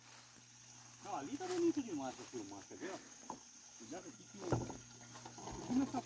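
Quiet, farther-off conversation of several people, over a low steady hum.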